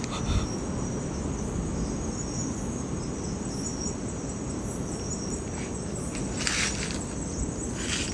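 A steady high-pitched chorus of night insects, over a low rumbling hiss, with a brief rustle about six and a half seconds in.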